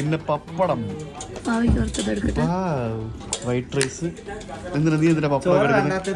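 People talking across the table; the words are not made out.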